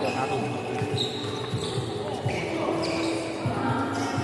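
Indoor badminton rally: sneakers squeaking and thudding on the wooden court floor, with several short squeaks and sharp racket-on-shuttlecock hits amid the busy sound of other courts in the hall.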